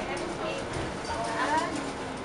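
Passengers talking inside a VDL Phileas bus, over the cabin's steady running noise, with irregular light clicks.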